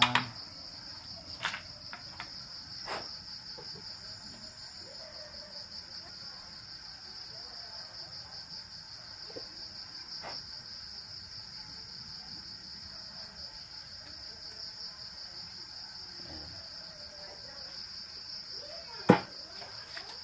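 Crickets chirring steadily at a high pitch, with a few light clicks and taps of small parts being handled on a workbench; the sharpest click comes near the end.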